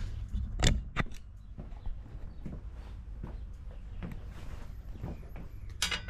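Handling noise as a camera is picked up and carried: two sharp knocks about half a second and a second in, then scattered light clunks and rustle over a low steady rumble.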